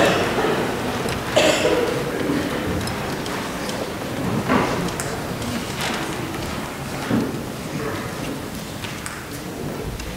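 Steady rustling room noise with about four soft thumps and knocks, as musicians carry a cello and a guitar into place and settle in before playing.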